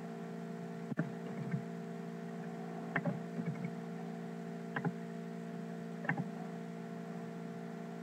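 Steady electrical hum picked up by a poor-quality recording microphone, with a few faint short clicks spread through it.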